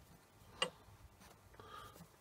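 A single light, sharp metallic click about halfway through as the phosphor bronze lead screw nut is turned by hand on its steel lead screw, with faint handling sounds near the end.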